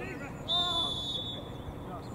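Referee's whistle blown in one long, steady, high-pitched blast starting about half a second in, stopping play, over players' shouts across the pitch.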